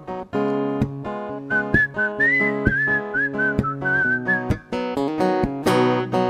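Steel-string acoustic guitar strummed in chords, with a whistled melody over it from about a second and a half in until about four and a half seconds in.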